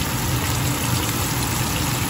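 Flour-dredged chicken breasts deep-frying in canola oil held at about 350 degrees in a Dutch oven. The oil bubbles around the pieces with a steady, dense sizzle and crackle.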